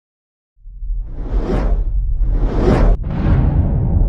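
Whoosh sound effects of a logo intro: two swelling whooshes about a second apart over a deep steady rumble, the second cut off sharply and followed by a third that fades away.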